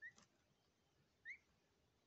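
Indian peafowl chick giving two short, rising peeps, the second and louder one about a second and a quarter in.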